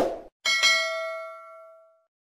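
Notification-bell sound effect: a single bright ding about half a second in, ringing on several pitches and fading out over about a second and a half, just after the tail of a short click at the start.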